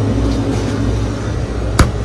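Steady low hum of a store's glass-door freezer case, with a single sharp knock near the end as the glass freezer door is swung shut.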